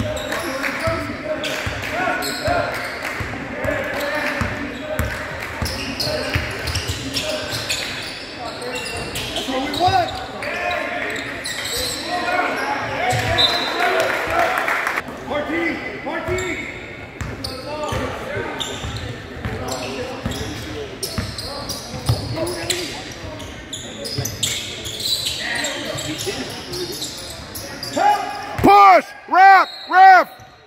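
Basketball dribbling and sneakers squeaking on a hardwood gym floor during play, with players' and spectators' voices echoing in a large hall. Near the end come three loud, short squeals in quick succession.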